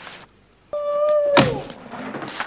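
A sudden held pitched tone lasting about two-thirds of a second, ended by a sharp thunk as the pitch slides down, from the TV episode's soundtrack.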